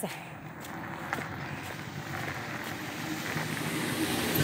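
A car approaching along a rural road, its engine and tyre noise growing steadily louder.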